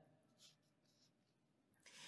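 Near silence: a pause in the voice-over, with a faint short hiss near the end.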